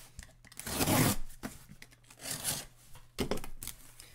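Gloved hands rubbing and scraping on a cardboard shipping case: three short bursts of scraping noise, the loudest about a second in.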